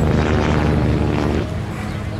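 A motor vehicle engine running with a low, steady drone. It is strongest for the first second and a half, then drops back to a lower hum.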